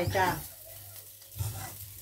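Raw rice and ginger stir-frying in a nonstick pan: a faint steady sizzle, with a spatula stirring and scraping through the grains. This is the rice being fried before it is cooked, for chicken rice.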